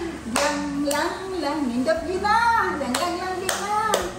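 A voice-like melody, sung or hummed in smooth held notes, with several sharp claps or slaps at uneven intervals.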